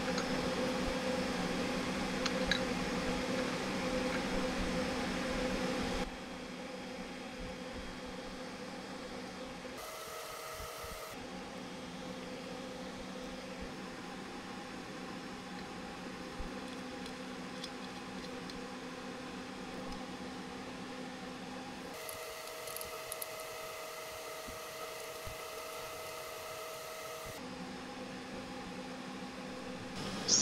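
Steady machine hum of running fans, its tone and level changing abruptly a few times, with a few faint clicks of aluminium profiles and connectors being handled.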